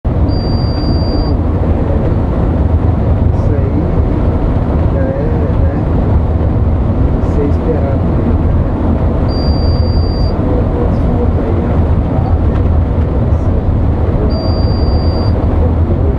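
Coach bus cruising along a highway, with a loud, steady low rumble of engine and road noise heard from the front of the bus.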